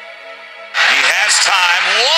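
Background music, cut off about three-quarters of a second in by a loud, excited man's voice starting a football play-by-play call.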